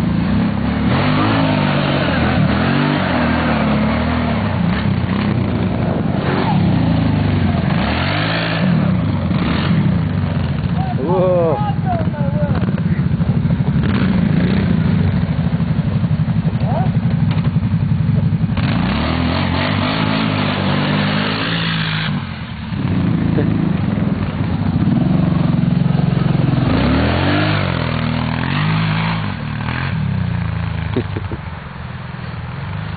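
Kawasaki Brute Force ATV engines running and revving, the pitch rising and falling repeatedly as the quads accelerate and slow, with a brief lull about two-thirds of the way through.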